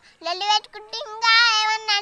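A young girl's high-pitched voice speaking in a sing-song way, in short syllables, then holding one long drawn-out vowel for nearly a second in the second half.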